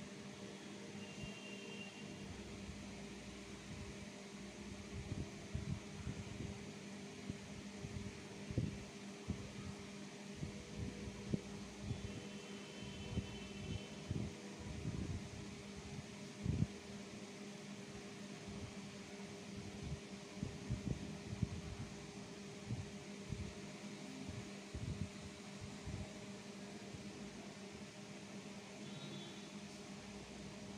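A crayon drawn over paper in short strokes, tracing dotted lines. Irregular soft scratches and taps start about four seconds in, over a steady low hum.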